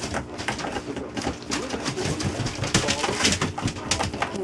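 Nine-week-old puppies gnawing on an upside-down plastic stool: a busy run of small clicks and knocks of teeth and paws on the plastic over a rustle of newspaper, with soft puppy grumbles.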